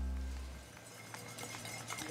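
A held music chord fades out over about half a second. It gives way to quiet street sound with the light, irregular patter of a group of runners' footsteps on pavement.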